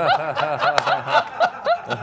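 Several people laughing together in a run of short, quick laugh pulses, about six a second.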